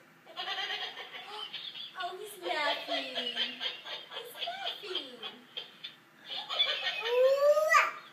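Plush laughing cow toy giving its recorded laughter, with a toddler's babbling mixed in.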